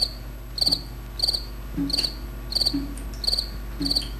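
Crickets chirping at night, a short pulsed high-pitched chirp repeating evenly about three times every two seconds.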